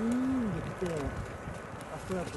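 A person's voice making drawn-out wordless sounds: one long rising-and-falling tone at the start, then a few shorter curving ones about a second in.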